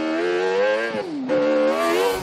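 Kart cross buggy's engine running hard as it slides through a dirt corner, its pitch dipping briefly about a second in and then holding steady. Near the end a hiss of spraying dirt as the buggy passes close.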